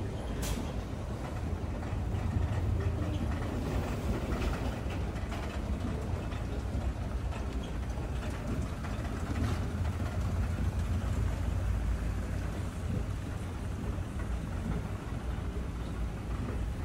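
Steady low rumble of escalator machinery in a large indoor hall, with a few light clicks, the sharpest about half a second in.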